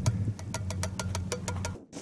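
Canned corn kernels tumbling out of a tin can into a plastic tub: a quick run of small clicks and taps, over a steady low hum. Both stop suddenly near the end.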